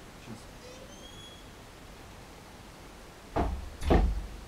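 Quiet room tone with a faint short high chirp about a second in, then two loud, dull thumps about half a second apart near the end.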